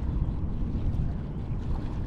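Steady low rumble of wind buffeting the microphone, over small waves lapping at the edge of a shallow estuary sandbank.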